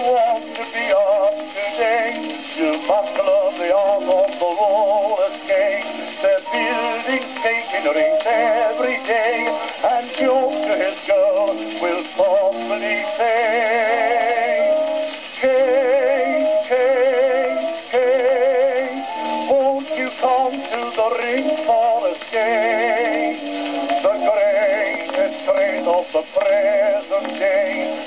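A c.1910 acoustic-era disc record of a music hall song playing on a gramophone: small orchestra accompaniment, with or between the baritone's verses. The sound is thin and narrow, with no deep bass and no high treble.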